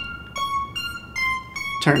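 Arpeggiated square-wave synth lead from Ableton Live's Analog, with chorus, auto filter, delay and reverb, playing a steady run of short plucky notes, a few per second. The square LFO on the auto filter is being turned down, so the arpeggio plays all the time instead of gating on and off.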